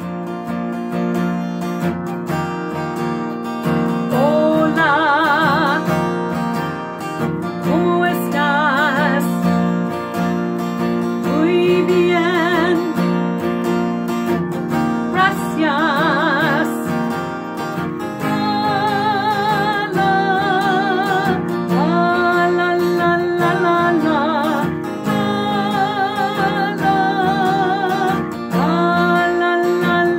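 A woman singing to her own strummed acoustic guitar. The guitar plays alone for about the first four seconds, then the voice comes in with a series of phrases whose held notes waver in a wide vibrato.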